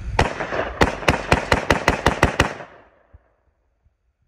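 AR-style rifle fired about ten times: a single shot, then after a short pause a quick string of nine shots at about four to five a second, the last one about two and a half seconds in.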